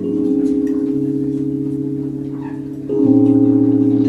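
Live jazz band playing slow held chords on keyboards, the tones wavering with a steady pulse over a low sustained bass note. The chord changes and gets louder about three seconds in.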